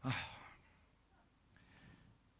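A man's short breathy exhale, like a sigh, lasting about half a second at the start, then near silence in a small room.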